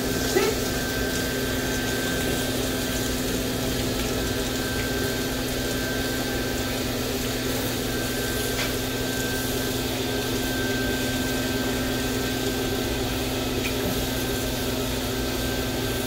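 Water spraying steadily from a hand-held hose sprayer onto a dog's coat in a steel wash tub, over a constant motor hum with a thin high whine.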